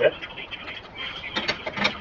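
Hydraulic floor jack being let down so the car settles onto the wheel, with mechanical clicking and rattling from about a second in.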